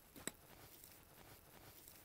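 Near silence, with one brief faint crackle near the start from the soil and roots of a freshly lifted chive clump being handled.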